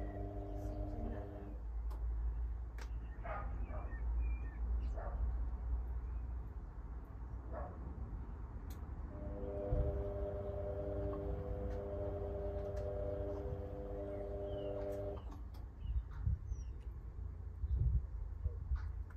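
Indesit IWB front-loading washing machine tumbling a wash: the drum motor hums with a steady pitched whine for about the first second and a half, pauses while the drum rests, then runs again for about six seconds from about nine seconds in. A low rumble runs underneath, with scattered light clicks and knocks from the tumbling load.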